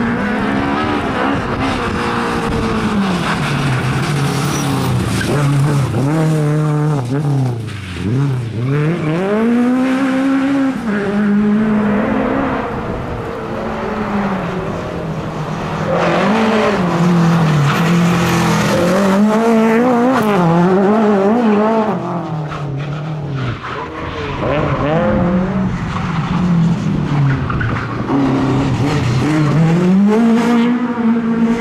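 Lada 2107 rally car's four-cylinder engine revving hard, its pitch climbing through the gears and dropping sharply on lifts and downshifts, again and again, as the car is driven flat out.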